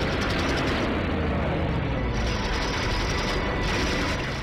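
Film-soundtrack dogfight audio: the steady roar of WWII piston fighter engines with a deep rumble, under a music score. There is a rapid rattle of machine-gun fire in the first second.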